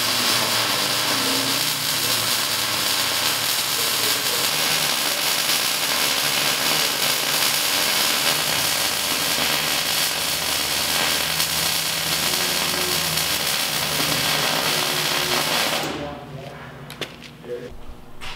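MIG welder arc crackling steadily as a long bead is laid to join a steel rock ring to a steel wheel. The arc cuts off about sixteen seconds in.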